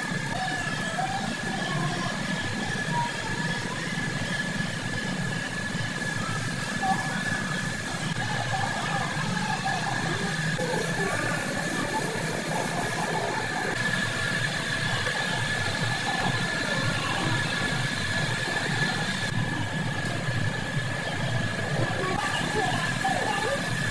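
Steady machine noise with a low rumble and a constant high-pitched whine, holding even without any distinct knock or event.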